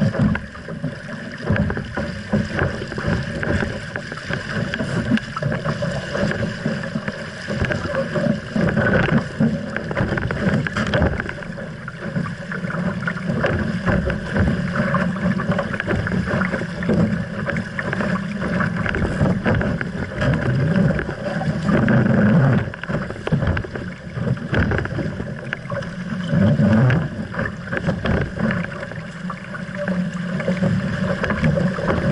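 RS Aero dinghy sailing hard through chop: water rushing along the hull, frequent slaps and knocks of waves on the hull, and wind buffeting the deck-mounted microphone, with a few louder surges.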